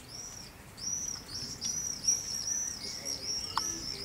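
Common swifts screaming: a run of shrill, high, arched notes, about three a second, starting about a second in.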